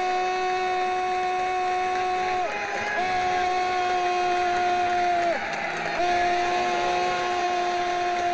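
Marching band brass holding one long, steady note three times at the same pitch, each about two and a half seconds, dropping off at the end of each. Stadium crowd noise runs underneath.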